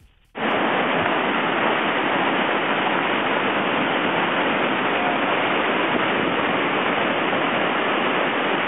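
Loud, steady rush of whitewater rapids, cutting in suddenly a moment in.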